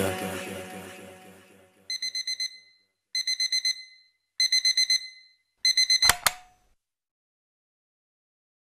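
Music fading out, then a digital alarm clock beeping: four quick bursts of rapid high beeps about a second and a quarter apart. A sharp click cuts off the last burst.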